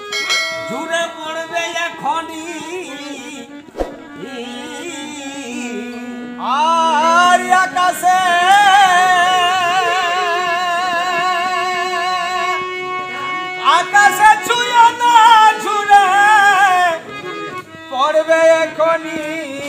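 Jhumur folk song: singing in long, held, wavering phrases over sustained harmonium notes. The voice comes in strongly about six seconds in, and a second phrase follows a little after the middle.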